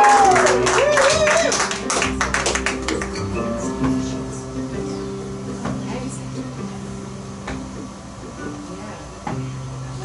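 Acoustic string band of fiddle, mandolin, acoustic guitar and upright bass playing live, an instrumental stretch between sung lines. Sharp picked and strummed chords come in the first couple of seconds, then quieter playing over long held low notes.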